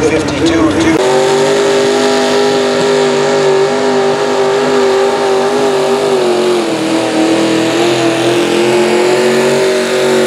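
V-8 engine of an antique pulling tractor running at high revs under full load while it drags a sled. Another engine dies away, falling in pitch, in the first second. The steady pitch then holds, sagging slightly about two-thirds of the way through.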